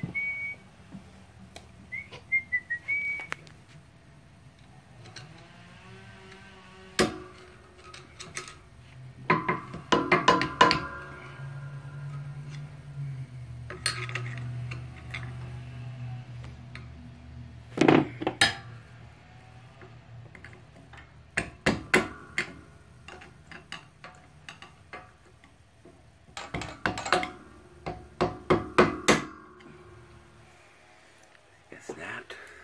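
A person whistles a short tune for the first few seconds, then a mallet strikes metal in quick groups of several sharp blows every few seconds, as a control arm bushing is driven and seated in a shop press.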